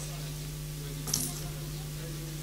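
A single brief, sharp high clink about a second in, over a steady low hum.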